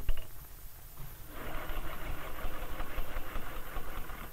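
Electric sewing machine running, stitching a seam with a fast, even rattle that starts about a second in. A short knock comes just before it.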